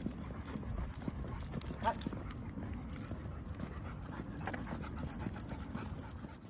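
A leashed pit bull panting as it walks, over the scuff and tick of footsteps on asphalt, with a short rising whine about two seconds in.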